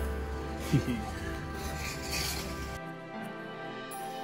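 Background music with steady held notes. A brief snatch of a voice comes about a second in. The low outdoor rumble under the music cuts off suddenly near three seconds in.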